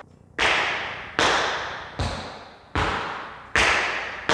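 Metal-plated tap shoes striking a wooden floor in five sharp, evenly spaced taps a little under a second apart, each ringing briefly in the room. This is a cramp roll played slowly, stroke by stroke: toe, toe, heel, heel.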